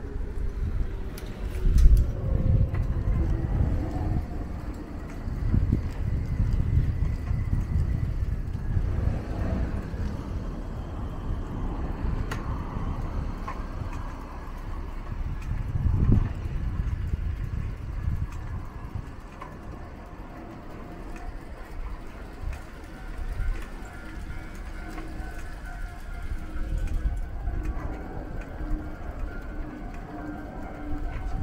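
Night urban street ambience: an uneven low rumble of road traffic, swelling about two seconds in and again midway, with faint steady tones over it.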